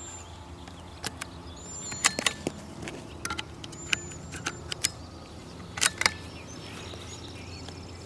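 Sharp metallic clicks and clacks from a CZ-455 bolt-action .22 LR rifle's action being handled by hand, in small clusters, the loudest pair about six seconds in, over a steady low hum.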